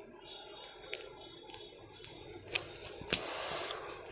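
Light clicks, then a rustling hiss as a tassar silk sari is unfolded and shaken out by hand, with one sharp knock partway through.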